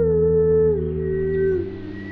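Layered mouth-made music: a steady low hummed bass drone under a higher held vocal tone that glides down between notes, with a fainter higher line above it. Near the end the upper tone fades, the drone changes, and the sound drops in level.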